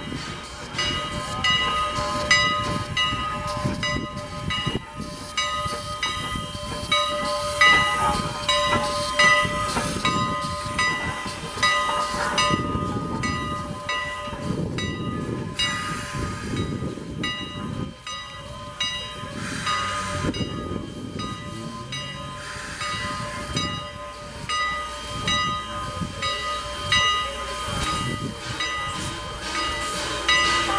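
Strasburg Rail Road No. 89, a 2-6-0 steam locomotive, moving slowly toward its coaches with steam hissing. Steady tones and short repeated sounds run through it.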